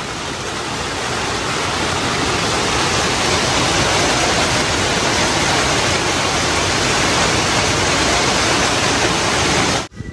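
Heavy rain pouring down onto and around a plastic tarpaulin overhead: a loud, steady, dense hiss that grows slowly louder and cuts off abruptly just before the end.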